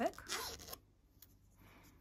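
A spoken word trailing off in the first moment, then faint rustling as hands handle and turn a crocheted yarn tote bag.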